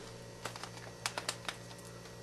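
A few faint, sharp clicks of a hex driver bit being swapped in an electric screwdriver, over a steady low hum.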